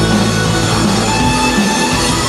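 Rock band playing live and loud: electric guitars, bass guitar and drum kit.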